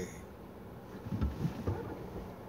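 Low, steady rumble of a car's idling engine and cabin noise while the car sits stopped in traffic, with faint irregular low sounds from about a second in.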